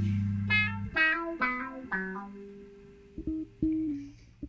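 Background music: a run of single plucked guitar notes, each ringing and dying away, then a few softer plucks over a low held tone as the music fades down.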